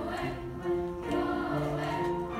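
Children's choir singing a song in held notes that change about every half second, with piano accompaniment.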